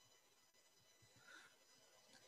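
Near silence: room tone, with one faint, short soft swish a little past the middle.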